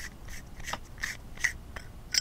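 Threads of an aluminium tube mechanical mod being unscrewed by hand, rasping faintly in a few short scraping strokes.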